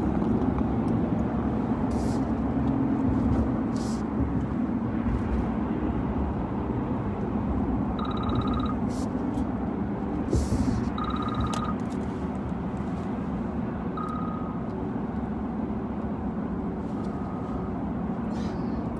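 Steady road and engine noise heard inside a car cabin while driving at highway speed. From about eight seconds in, a short high electronic beep repeats roughly every three seconds, fading by the last one.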